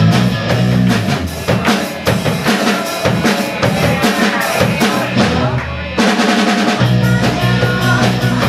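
Live rock band playing loudly, with drum kit, electric guitars and bass. There is a brief drop-out just before six seconds in, after which the full band comes back in.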